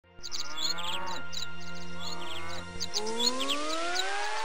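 Birds chirping over a held low music chord; about three seconds in the chord stops and a smooth rising sliding tone begins, with the chirps going on over it.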